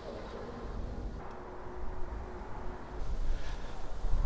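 Faint, steady hum of the motorhome's powered rear garage door mechanism as the large door lifts open, fading out about three seconds in.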